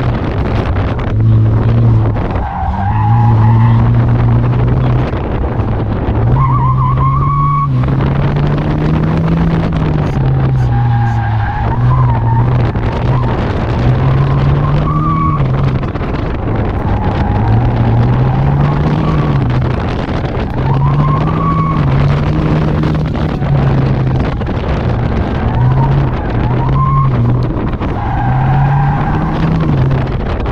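Car engine heard from inside the cabin, rising and falling in pitch again and again as the driver accelerates and lifts between cones on an autocross course. The tires squeal briefly in the corners several times.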